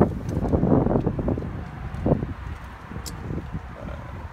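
Wind buffeting the handheld camera's microphone in gusts, strongest in the first two seconds, over a low steady rumble.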